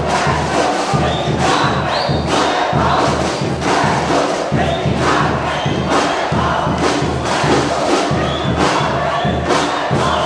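Football supporters' drum section (bateria) playing live: a steady beat of bass drums and snares, about two strong strikes a second, with many voices chanting along over it.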